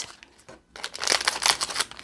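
Crinkling of a small mystery-bag packet being handled and opened by hand: a run of quick crackles that starts about a second in after a brief quiet.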